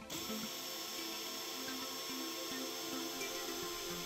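Power drill running steadily, a twist bit boring a bolt hole through a fibreglass mould flange, with a steady high whine; background music underneath.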